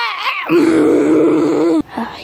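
A person's voice: a short wavering vocal sound, then a long, low, rough groan of over a second that cuts off sharply.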